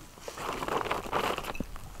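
Clear plastic sheeting rustling as hands adjust it over a garden bed.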